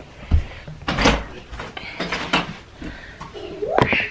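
A few separate knocks and bumps of household things being handled and moved about, with a short voice sound near the end.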